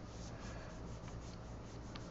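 Faint scratching of a Wacom Cintiq pen stylus rubbing across the tablet's screen as brush strokes are painted, over a steady low room hum.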